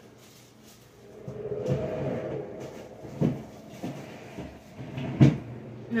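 Handling noise of groceries being moved about on a kitchen counter, with a few sharp knocks as things are set down or bumped. The loudest knock comes about five seconds in.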